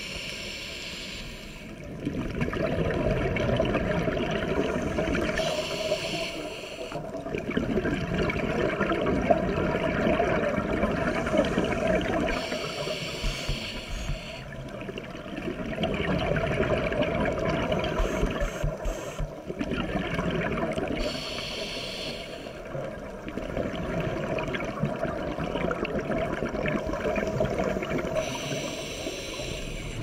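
Scuba diver breathing through a regulator underwater: a short hiss on each inhale, then a longer rush of bubbling exhaust on each exhale, about five slow breaths.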